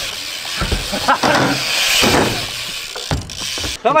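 BMX bikes rolling on a skatepark ramp and concrete: a steady rushing hiss of tyres on the riding surface, with a low thump about half a second in.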